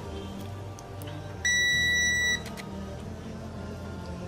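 Digital multimeter's continuity buzzer giving one steady, high-pitched beep about a second long, starting about one and a half seconds in. A low background music bed runs underneath.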